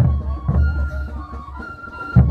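Traditional Andean band music: wind instruments holding high, steady notes over a bass drum beating roughly twice a second.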